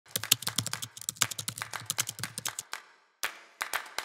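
Keyboard typing sound effect for text being typed out on screen: a quick run of keystroke clicks, a pause about three seconds in, then a few more keystrokes near the end.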